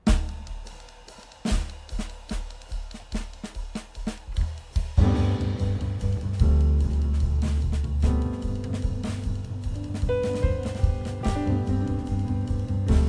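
Jazz band music: a heavy hit opens it, followed by drum strokes about three a second, and about five seconds in the full band comes in with drums, a deep bass line and sustained pitched notes.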